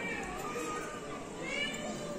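A pause in a man's amplified speech in a hall, filled with low room sound and faint voices, and a short, faint high-pitched rising call about one and a half seconds in.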